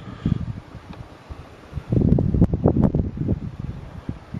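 Rustling and bumping of a handheld camera being moved, with wind buffeting the microphone. The noise is uneven and grows louder about halfway through, with a couple of sharp clicks near the end.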